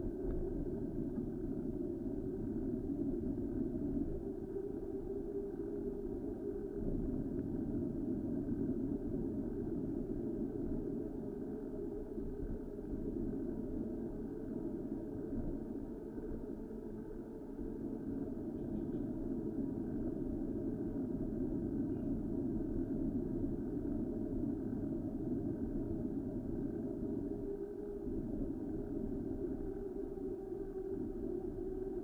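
Steady, muffled rumble of wind and street traffic heard from a bicycle riding through city traffic, dipping slightly a little past halfway.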